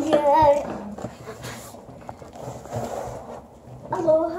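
A child's brief voice at the start, then faint rustling and handling of a cardboard box as it is being opened.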